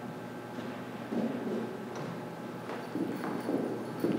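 A few light footsteps across a hollow stage floor, over the low background noise of a large hall.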